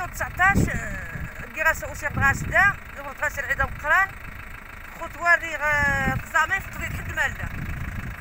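A person's voice in short, rising-and-falling exclamations, over a low steady rumble.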